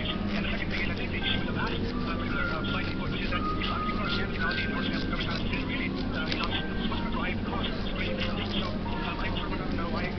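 Indistinct chatter of many voices in a busy room, over a steady low hum.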